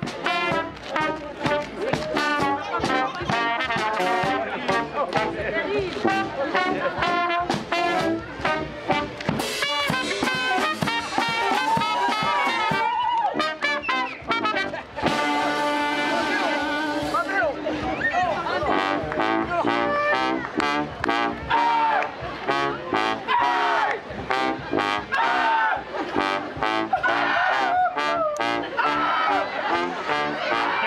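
Charanga brass band playing live: trumpet, trombone, saxophone and sousaphone over a bass drum with mounted cymbal and a snare drum. About halfway through the band holds one long chord, then the rhythm picks up again.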